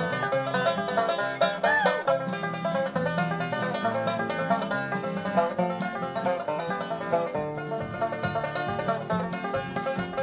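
Live bluegrass instrumental: five-string banjo picking a tune over flat-top guitar backing, with a note bent up and back down about two seconds in.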